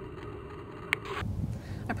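Steady outdoor background noise, a low rumble with a faint hiss, with one short click about halfway through; the noise changes character just after. Speech starts at the very end.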